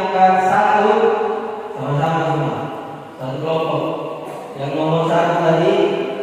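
A man's voice chanting Qur'anic recitation in Arabic: long held, melodic notes in phrases that pause briefly about every one and a half seconds.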